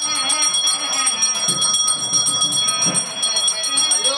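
Puja hand bell rung rapidly and without pause during an aarti, its ringing steady and high, with a few low thumps beneath it.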